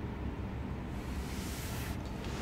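Steady low background noise inside a pickup truck's cabin, with a soft hiss that swells in the second half as the phone camera is moved.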